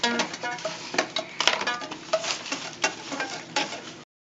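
Irregular clatter and rustle of toys, plastic and gift wrapping being handled, with a dozen or so short clicks and knocks and a few brief pitched snatches in between.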